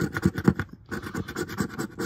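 A quarter scraping the coating off a paper lottery scratch-off ticket in rapid back-and-forth strokes, with a brief pause a little under a second in.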